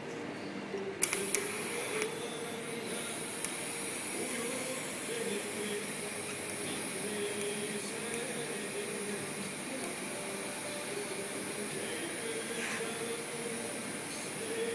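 TIG welding arc on stainless steel: a sharp click about a second in as the arc strikes, then a steady high hiss that holds.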